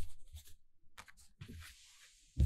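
An album's softcover photobook being handled and slid across a surface, with paper rustling and rubbing and a few light taps.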